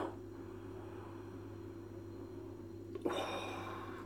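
A man's breath through the nose over a beer glass, a breathy rush of about a second coming about three seconds in, set against a quiet room with a steady low hum.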